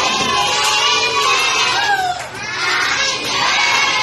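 A crowd of young children shouting and cheering together, many high voices overlapping, with a brief lull about halfway through.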